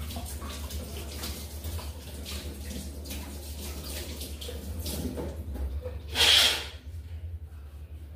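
Water splashing and running in a kitchen sink while dishes are rinsed and handled, with scattered clinks of crockery. A brief, much louder rush comes about six seconds in.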